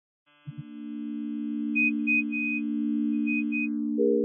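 Synthesized electronic intro drone: two short low thumps, then a steady low hum that slowly grows louder, with a few short high beeps over it.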